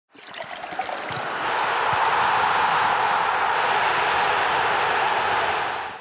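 Ice cubes clinking into a drinking glass, then liquid poured steadily into the glass over them. The pour fades out just before the end.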